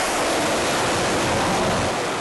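A steady, even rushing roar with no distinct events.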